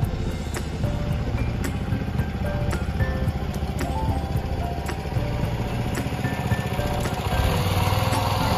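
A small boat's motor running steadily, with background music of scattered short notes over it.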